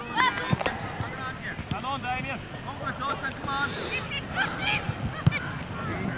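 Several distant voices shouting and calling out, overlapping, with a couple of dull thumps.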